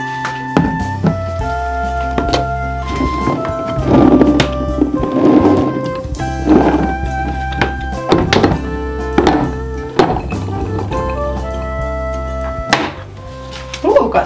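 Instrumental background music, with a string of sharp knocks and short rattles of olives being tipped into glass jars.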